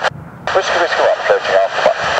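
Air traffic control radio transmission: a thin, radio-filtered voice that starts about half a second in after a brief pause.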